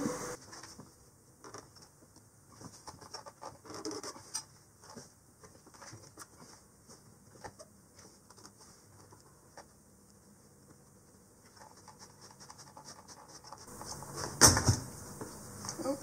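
A fuel pump locking ring being worked loose by hand, with faint scattered scrapes and small clicks. One louder sharp knock comes near the end as the spring-loaded pump assembly lets go.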